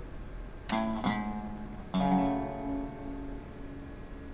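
Resonator guitar strumming two chords, the first near the start and the second about two seconds in, each left to ring out and fade.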